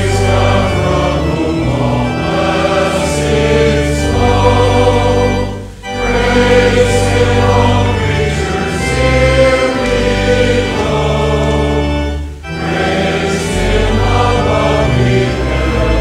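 Congregation singing a hymn with organ accompaniment, with short breaks between lines about six and twelve seconds in.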